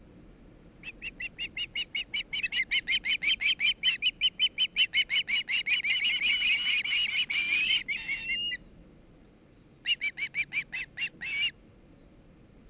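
Osprey calling at the nest: a rapid series of short high chirps, about five or six a second, that swells louder, stops about 8.5 seconds in, and resumes for a shorter bout near the end.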